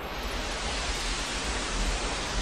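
A steady rushing noise, like a held-out whoosh, over a low steady drone, part of the credits soundtrack.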